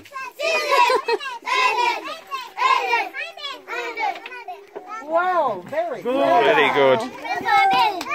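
Young children's high-pitched voices talking and calling out, several at once and loudest about six seconds in.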